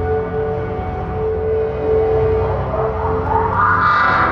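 Live band playing slow, ambient improvised music: a long held tone over a low drone, with a rising glide in pitch near the end.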